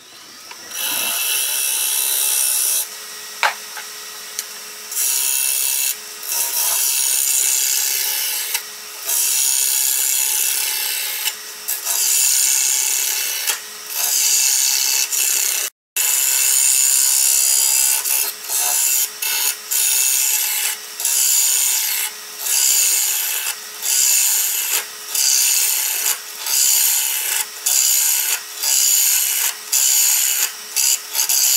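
Turning tool cutting the inside of a wooden bowl spinning on a wood lathe: a loud scraping rush of shavings peeling off, in repeated passes. The passes get shorter and come about once a second or faster in the second half, with a brief total dropout about halfway through.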